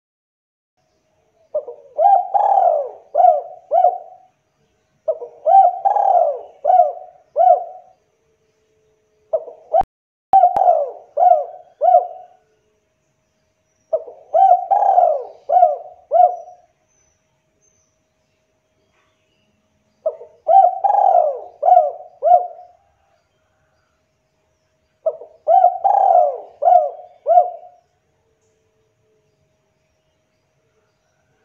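Spotted dove (tekukur) cooing: six phrases of four or five rolling coos each, with pauses of a second or more between phrases.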